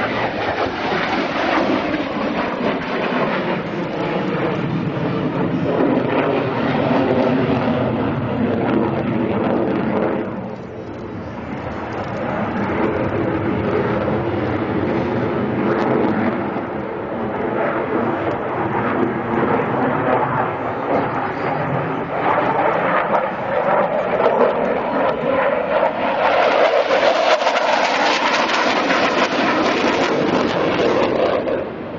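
MiG-29 fighter jet flying a display pass, its twin turbofan engines making a loud, continuous jet noise. The noise dips briefly about a third of the way in, then builds again and is loudest and brightest near the end.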